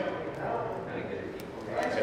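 Faint voices murmuring in a large room, with a few light clicks and handling sounds.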